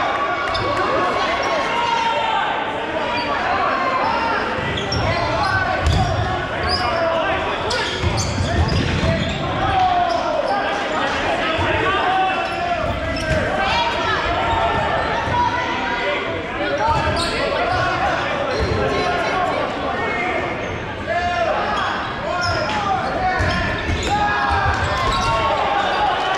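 Dodgeball play in a gymnasium: many players shouting and calling over one another, with dodgeballs bouncing and smacking on the hardwood floor several times. The sound carries the reverberation of a large hall.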